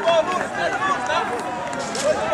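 Many voices talking and calling out over one another at once, a babble of players and onlookers on an open pitch.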